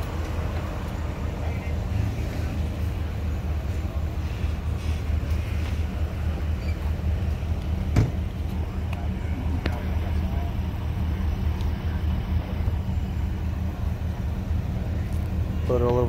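Steady low drone of an idling vehicle engine, with faint voices in the background and one sharp click about halfway through.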